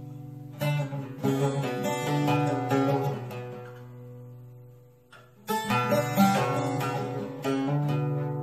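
Solo bağlama (long-necked Turkish saz) playing the instrumental introduction of a folk song, rapid picked notes with a ringing drone. About three seconds in the playing thins and dies away almost to silence, then starts again strongly about half a second later.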